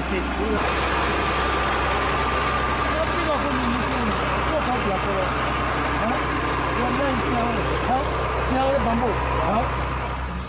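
Engine of a motor-driven water pump running steadily, a constant hum with a noisy mechanical drone that grows louder about half a second in, while it pumps water through a long hose. Voices talk faintly over it.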